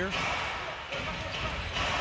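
Arena crowd noise during a basketball game, with a ball bouncing on the hardwood court.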